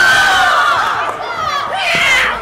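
A group of children shouting and cheering together, many voices at once, loud, with a fresh burst near the end.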